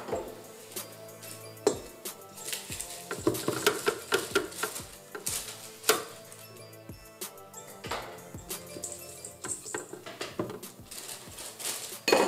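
Scattered clinks and taps of a glass and utensils against a stainless-steel stand-mixer bowl as sugar is tipped in, over background music.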